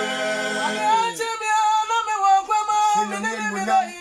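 A small group of men and women singing worship a cappella. Several voices hold a chord for about a second, then one higher voice carries a wavering, ornamented line, and the low held note comes back near the end.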